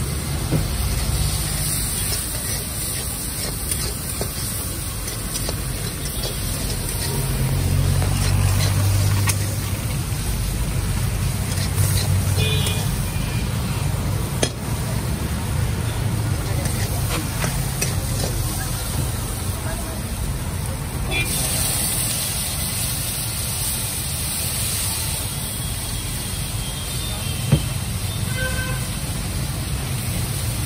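Masala Maggi noodles frying and being stirred in a pan at a roadside stall, over a steady rumble of traffic and background chatter. There are two sharp knocks, one about halfway through and one near the end.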